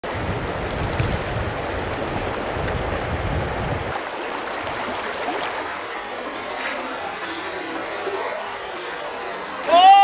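Steady rush of a shallow stream running over rocks, with a low rumble under it for the first four seconds that then drops away. A man starts laughing just before the end.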